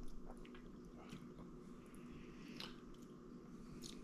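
Faint mouth sounds from savouring a sip of bourbon: a few soft lip smacks and tongue clicks, spread through the quiet, over a steady low hum.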